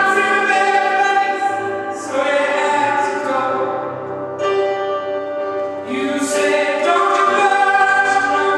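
A woman singing a slow blues song into a microphone, holding long notes in phrases a few seconds long, with new phrases starting about two seconds in and again about six seconds in.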